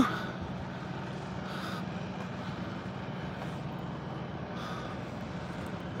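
Steady low hum of road traffic, with two faint swells as vehicles pass.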